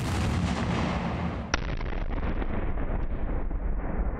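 Large outdoor test explosion: a sharp bang at the very start, then a long rumble that lasts throughout. A second sharp crack comes about a second and a half in.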